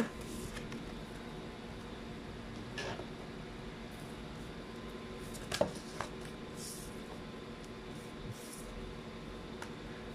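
Oracle cards being shuffled and laid down on a wooden tabletop: a few soft card swishes and light taps, the sharpest tap about five and a half seconds in. A steady faint hum runs underneath.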